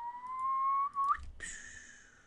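A person whistling: one long, slowly rising note that ends in a quick upward flick, then after a brief break a fainter note that falls away.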